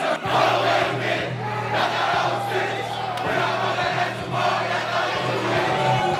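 Music with a steady bass note, under a group of football players shouting and yelling together.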